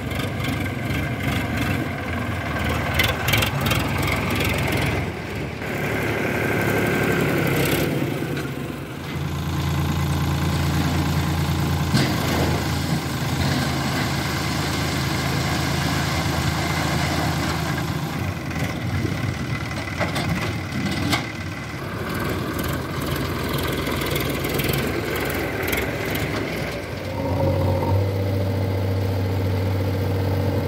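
Diesel tractor engine running steadily while the tractor drives and tips its trolley, and a backhoe loader's diesel engine near the end. The engine note changes sharply about nine seconds in and again near the end.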